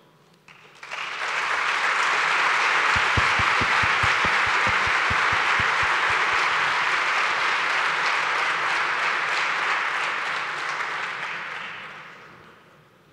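Audience applauding, starting about a second in and fading away near the end.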